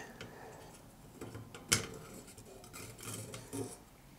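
Light clicks and clinks of metal parts being handled as a NAS motherboard is worked free of its sheet-metal chassis, with one sharper click about halfway through and a few small taps near the end.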